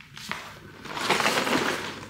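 Rustling and scraping of a cardboard Lego box being picked up and handled, with small knocks, building about a second in.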